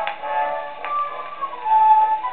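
Acoustic-era 78 rpm shellac record played on a horn gramophone: a small orchestra plays an instrumental passage of a music hall song, a melody of held notes with a thin, narrow sound. Two brief clicks from the disc surface come through, one at the start and one about a second in.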